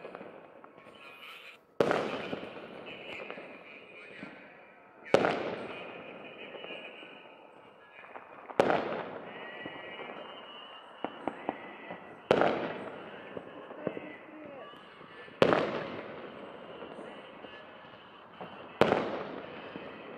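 Fireworks salute bursting: six booms about three and a half seconds apart, each trailing off in a long echo, with a few small crackles around the middle.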